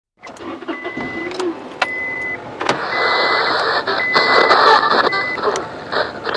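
Noisy car sounds with many sharp clicks and several short, steady, same-pitched beeps, growing louder about three seconds in.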